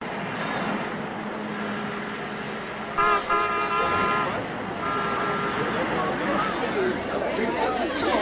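A car horn honks twice: first about three seconds in for over a second, then again shortly after, more briefly. Both sound over steady street noise with voices chattering in the background.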